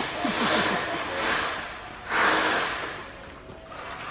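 A steel trowel scraping wet sand-and-cement mortar in long strokes. There are two or three strokes of about a second each, and the loudest comes about two seconds in.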